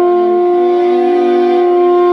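Solo saxophone holding one long, steady note in a slow melody.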